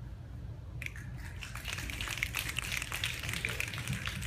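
Audience snapping their fingers as quiet applause: a dense, scattered patter of sharp snaps that begins about a second in and keeps going.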